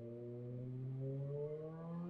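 A man's long, low hum held on one note for nearly three seconds between spoken phrases.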